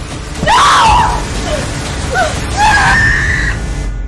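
A woman screaming in terror as she is attacked with a knife: a loud scream about half a second in, a few shorter cries, then a long high scream that cuts off sharply just before the end, over a low music bed.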